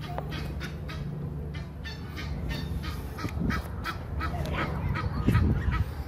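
Geese calling: a quick series of short honks, several a second, getting louder toward the end, over a low steady hum that fades after about two seconds.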